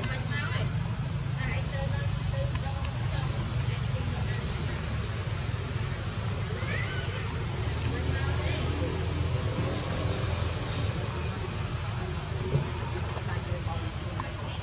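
Outdoor ambience: a steady low rumble under a continuous high, rapidly pulsing buzz, with a few short high-pitched chirps or squeaks.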